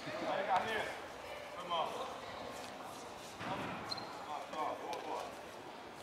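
Players' voices calling out across a futsal court, with the ball striking the hard court now and then. A few short calls come through over a background hum of play.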